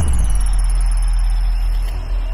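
Synthesized logo-reveal sound effect: a deep, loud rumble held steady under a thin high tone that slides down in the first half second and then holds.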